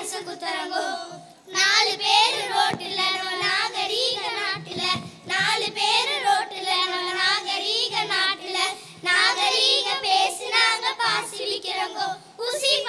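Children singing a song into a stand microphone, the voices wavering on held notes, with a short break about a second in.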